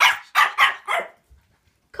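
Pomeranian puppy barking: four sharp, high barks in quick succession, all in the first second. The owner puts this barking down to frustration at not being able to reach food set out on the stairs below.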